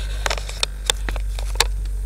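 Low steady drone of a car heard inside its cabin, with about half a dozen sharp light clicks scattered through it.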